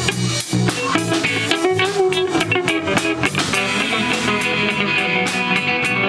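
A surf rock band playing live: two electric guitars through small amplifiers, an electric bass and a Gretsch drum kit keeping a steady beat, with a guitar holding a sustained high note through the second half.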